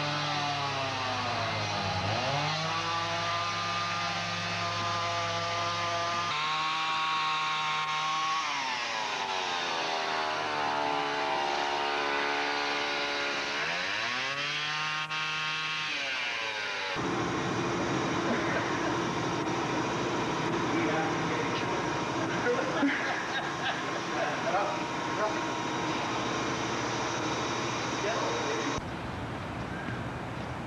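Chainsaw working a log, its engine revving up and dropping back again and again as it cuts. After a break about 17 seconds in, the rest is a steadier, noisier mechanical background with scattered small ticks.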